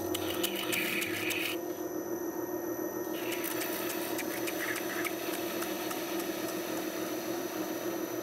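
Wet grinding-polishing machine running with a steady hum while an epoxy-mounted paint sample is ground against its rotating water-fed disc. The scraping hiss comes in two stretches in the first half.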